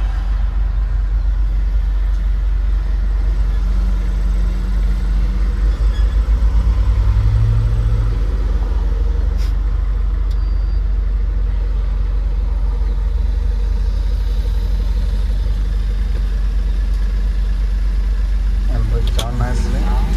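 Engine and road rumble inside the cab of a moving manual light truck, steady and loud, with the engine's hum standing out more clearly for a few seconds in the middle.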